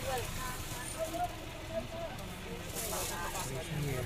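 Steady engine and road rumble inside a moving passenger van, with faint talking in the cabin.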